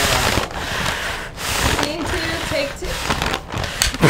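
Rustling and handling noise with faint voices, then a single sharp clack just before the end as the film clapperboard's sticks snap shut.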